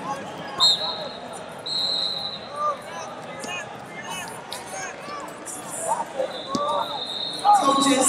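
Busy wrestling-tournament hall: a constant babble of many voices, with referee whistle blasts from the mats, a short one about half a second in, another about two seconds in, and a longer one near the end. Wrestling shoes squeak on the mat now and then.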